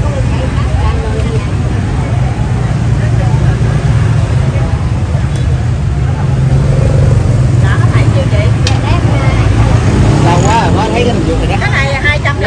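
Steady low rumble of street traffic, with voices chattering in the background.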